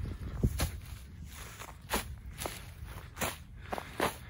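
Footsteps of a person walking through dry grass and weeds, a crunching step about every half second.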